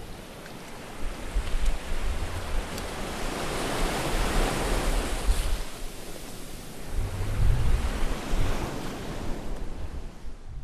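Sea surf washing in, a noisy rush that swells to its fullest around four to five seconds in, with deep rumbles underneath that are loudest about seven to eight seconds in.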